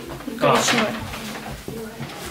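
A person's voice: a short drawn-out 'a', followed by a fainter held murmur near the end.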